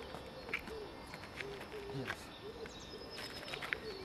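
A pigeon cooing, a string of short low coos repeating about every half second, with a few short scuffs of shoes on a gritty paved surface.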